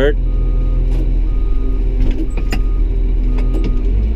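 A Caterpillar 966H wheel loader's diesel engine running steadily, heard from inside the cab. A faint backup alarm beeps about once a second throughout, with a few light clicks.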